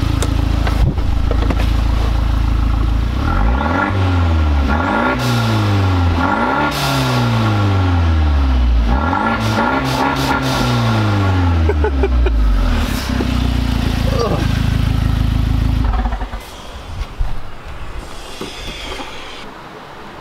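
Fiat 124 Spider Abarth's turbocharged 1.4-litre four-cylinder revved in neutral: idling, then blipped four or five times in a row, each rev rising quickly and falling back to idle, with short hisses between revs as a newly fitted blow-off valve is tried out. The engine sound stops about four seconds before the end.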